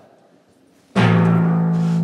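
A stage music cue starts suddenly about a second in, after near silence: a low drum hit and a held low note that carries on as a bed. It is the show's timer music, marking that the comedian's clock has started.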